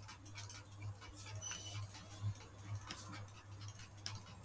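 Faint, irregular clicking from computer use, with a steady low electrical hum underneath.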